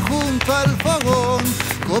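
Chacarera santiagueña played live: strummed guitar with a violin melody that wavers in pitch, and the singing coming back in near the end.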